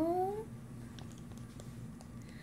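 The end of a short rising call, one smooth upward glide that stops about half a second in, followed by quiet with a few faint small clicks.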